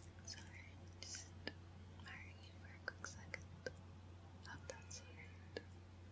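Soft, quiet whispering close to the microphone, broken by several sharp clicks.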